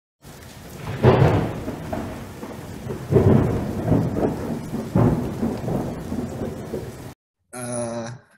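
Thunderstorm sound: steady rain with three loud rolls of thunder about two seconds apart, cutting off suddenly about seven seconds in.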